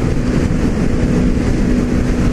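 Wind rushing over a motorcycle helmet and its microphone at freeway speed, with the motorcycle's engine droning steadily underneath.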